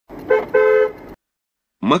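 Car horn honking twice, a short toot then a longer blast, over a low traffic rumble; the sound cuts off suddenly about a second in.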